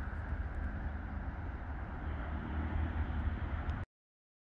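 Wind buffeting the microphone: a steady low rumble with a faint hiss, which cuts off suddenly near the end.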